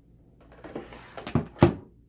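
Plastic head of a small paper shredder being lifted off its bin and set aside: a scraping rustle, then two sharp plastic knocks, the second the loudest.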